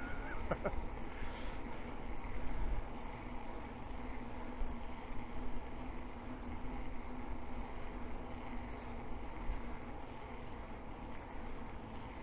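Wind rushing over the microphone and tyre noise on asphalt from an electric bike rolling along a road, with a faint steady hum underneath.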